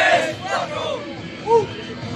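A group of military recruits shouting together in drill-style calls, many voices overlapping. It is loudest right at the start, with another strong shout about a second and a half in.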